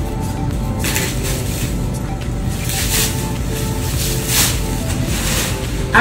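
Background music, with a few short rustling bursts from scissors cutting open a clear plastic package wrap.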